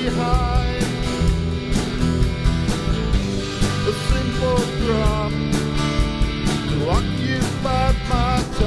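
A live band playing a rock song: a drum kit keeps a steady beat under acoustic guitar strumming and an electric guitar, with a rising slide in the melody near the end.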